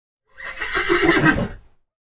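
A horse whinny, one call of about a second and a half that falls in pitch.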